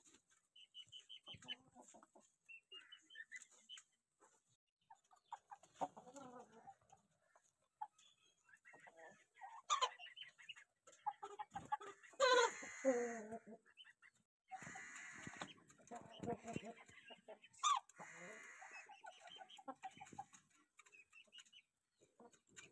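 A flock of Aseel chickens in a pen clucking and calling, with many short calls throughout. Louder calls come about halfway through and again near the end.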